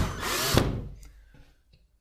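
Battery-powered drill with a Phillips bit driving a screw into a plastic drywall anchor. The motor whine dips and rises in pitch, then stops about half a second in, leaving only a few faint ticks.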